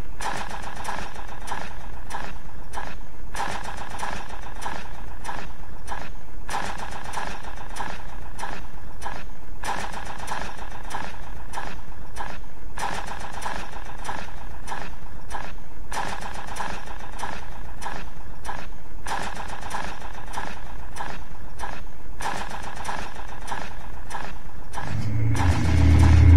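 Industrial noise music: a continuous, engine-like noise drone, steady in level, broken by brief dips every second or two.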